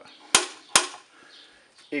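Plancha's piezo igniter clicking twice, two sharp snaps less than half a second apart, as the plancha is lit.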